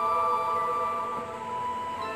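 Background music: a slow ambient passage of steady, held ringing tones.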